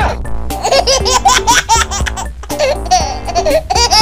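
Rapid high-pitched laughter, a string of short rising-and-falling laughs, over background music with a steady low beat.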